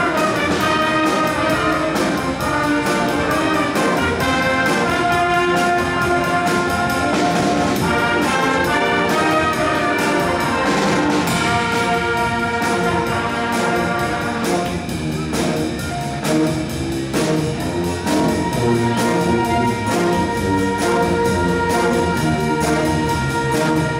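School jazz band playing: trumpets carry held brass notes over a steady beat on the drum kit.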